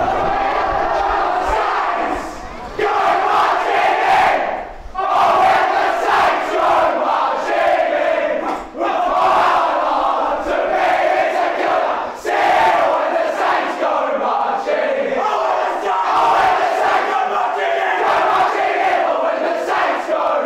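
A team of teenage footballers singing together in unison, loudly shouting out the lines of what is typically the winning side's club song, with short breaks between lines every few seconds.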